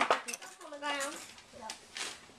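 A quick cluster of sharp clicks and clinks, hard objects knocking together, in the first half-second, then a brief spoken word and one fainter click near the end.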